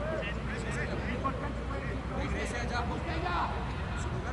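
Men's voices talking faintly and in snatches on a football touchline, over a steady low rumble of open-air background noise.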